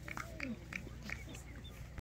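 A dog panting and snuffling, with a few short whines.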